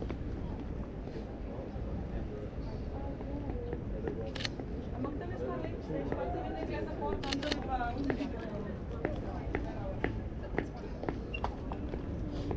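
Sony A7 III camera shutter firing in single sharp clicks as portraits are taken: one about four seconds in, a quick pair a little past seven seconds, then several fainter clicks near the end. Behind them is a steady background hiss with faint voices.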